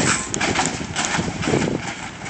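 A lowrider car rolling slowly with its engine running, with a few irregular light knocks over outdoor noise.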